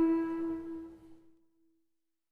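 Improvised trio music for alto saxophone, electric guitar and double bass: one long held note over softer playing, fading away to silence about a second and a half in.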